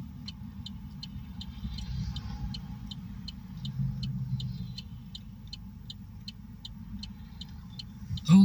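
Road and engine noise heard inside a moving car's cabin, a steady low rumble, with a turn-signal indicator ticking evenly at about two ticks a second.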